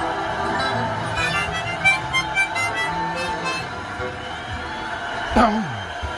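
Harmonica being played, short held notes and chords with quick changes. Near the end it stops, with a sharp knock and a quickly falling sweep.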